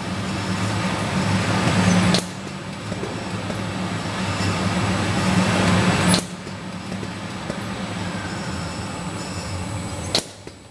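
Wrap-around case packer running: a steady machine hum and rushing noise that builds up, broken by a sharp clack about two seconds in and again about six seconds in, each followed by a sudden drop in level as the machine cycles.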